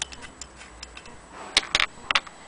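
Willcox & Gibbs single-thread chain-stitch sewing machine turned by its hand crank, its mechanism giving light irregular ticks, with two louder sharp clicks near the end.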